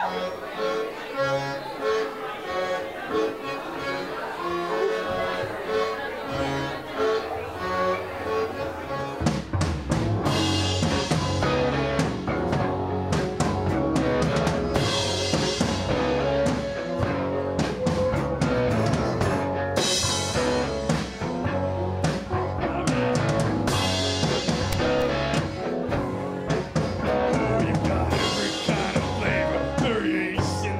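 Live rock band playing a song's instrumental opening on guitars and drum kit: a quieter melodic intro, then the drums and full band come in about nine seconds in and drive on with a steady beat.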